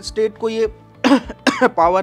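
A man's speaking voice, broken by a short cough about a second in.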